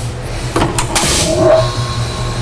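A rotary phase converter switched on and starting up: a few clicks, then thin steady high whine tones coming in about halfway through, over a steady low hum.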